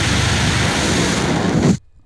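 Sound-effect dragon roar with a rushing blast of fire breath: a loud, dense noise that cuts off abruptly near the end.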